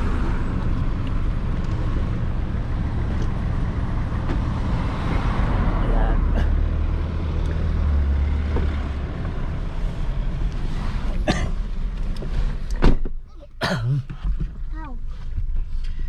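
Steady road-traffic rumble beside a busy street, then near the end a single loud thump as a car door shuts, after which the traffic noise drops away to the quieter car interior.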